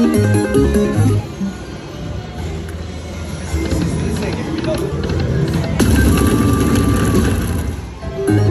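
Slot machine game music and reel-spin jingles from an Aristocrat Lightning Link video slot as its reels spin, a run of short electronic notes that grows louder and fuller about six seconds in.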